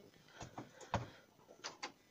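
A few faint crinkles and clicks from a disposable aluminum foil pan being handled, with a soft thump about a second in.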